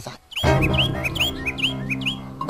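Small birds chirping in quick, short rising chirps, about five a second. About half a second in, background music comes in with held low notes.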